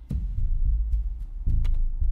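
Suspense soundtrack from a TV drama: two deep bass thuds about a second and a half apart over a low steady rumble.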